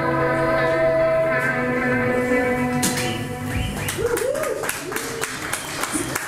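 A live rock band's final chord held and ringing out, fading after about three seconds. Then the audience claps, with scattered cheers and whoops.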